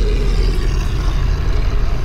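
A loud, deep, steady rumble, part of a trailer's ominous sound design.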